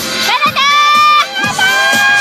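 Children shouting and cheering in two long, high-pitched held calls, over dance music with a steady beat.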